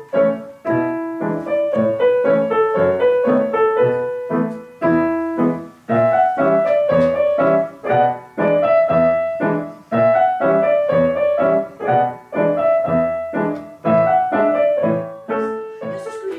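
Grand piano played four hands, a quick piece with notes struck in a steady, even rhythm.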